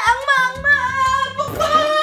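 A voice chanting a sing-song taunt, 'aaak, devil, devil, ppung-ppung', over light background music.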